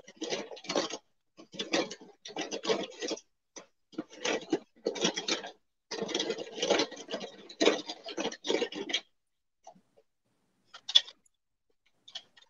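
Rummaging through a bag of small items: irregular clattering and clicking in quick flurries, stopping about nine seconds in, with a couple of sharp clicks near the end.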